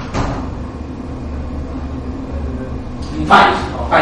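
Steady low hum of a lecture room, with a brief loud sound about three seconds in.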